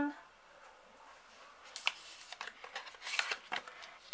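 A nail stamping plate being taken out of its cardboard box: faint scattered rustles and light clicks of card and plate being handled, starting about two seconds in.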